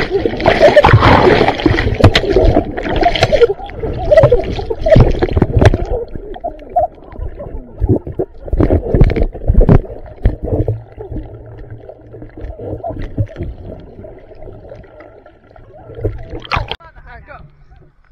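Muffled underwater water noise around a submerged GoPro in its housing: water churning and gurgling with repeated knocks and bumps as hands grab the camera, busiest in the first ten seconds. In the second half it settles to a quieter steady low hum, before a splashy burst near the end as the camera comes out of the water.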